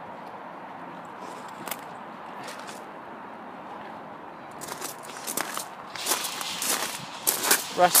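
Footsteps crunching on gravel, irregular and growing denser from about halfway through, over a steady background hiss.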